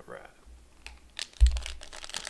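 Foil wrapper of a 2020 Contenders football card pack crinkling as it is picked up and handled, with scattered sharp crackles and a dull thump about one and a half seconds in.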